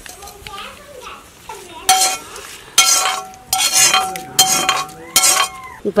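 A metal spoon scraping a tempering of mustard seeds, curry leaves and chillies out of an iron kadai: about five sharp scrapes and clinks from about two seconds in, with the metal ringing between them.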